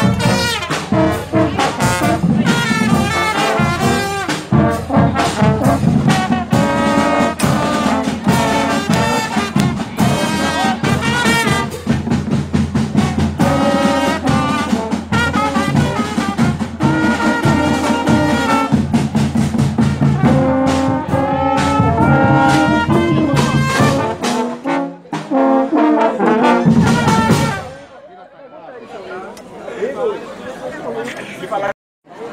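School marching band (banda marcial) playing at full volume: trombones, trumpets and euphoniums carry the tune over a steady beat of snare and bass drums. The music stops near the end, leaving a low murmur of voices.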